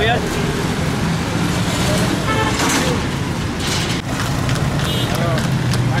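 Crowded street-market bustle: several people talking in the background over a steady low hum of motor traffic.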